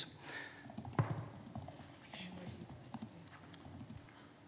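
Faint clicking of typing on laptop keyboards, with one louder knock about a second in and faint voices in the background.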